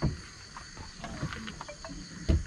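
A sharp knock, then a few light clicks and taps as a folding bed-frame piece is handled and fitted into a hatchback's rear load area, over a steady high insect chirring in the background.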